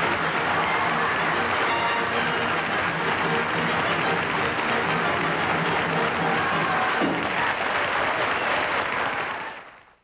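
Band music played under loud studio-audience applause, fading out just before the end.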